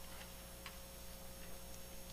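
Faint room tone in a pause between speech: a steady low hum with a few soft, irregular ticks.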